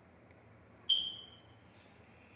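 A single high-pitched beep about a second in, sharp at its start and fading away over most of a second, over faint room noise.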